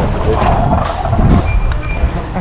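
Wind rumbling on the microphone, with music in the background. Two short high beeps sound near the end.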